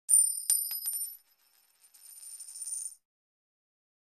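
Intro sound effect of bright metallic clinks: four or five quick strikes in the first second, ringing on at a high pitch. A fainter shimmer follows and cuts off about three seconds in.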